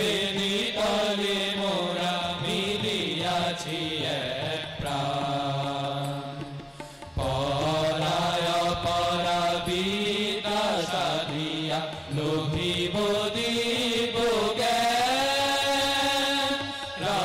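A group of young men singing a devotional song together into microphones, accompanied by harmonium and tabla, with long held notes and a brief lull about six seconds in before the singing resumes.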